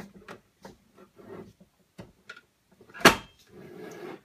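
Plastic carbonating bottle being screwed into a SodaStream Jet drinks maker: small scraping clicks of plastic on plastic, then one sharp knock about three seconds in as the bottle seats or the machine is set back upright, followed by softer handling noise.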